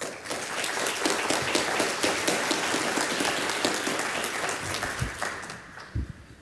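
Audience applauding after a talk, dense clapping that starts at once and dies away about five seconds in.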